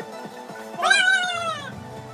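A single cat meow, about a second long, rising briefly and then falling in pitch, heard over background music with a steady beat.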